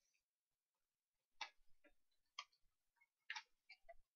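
Faint light clicks and taps of a cardboard trading-card box being handled and opened: about six short knocks from about a second and a half in.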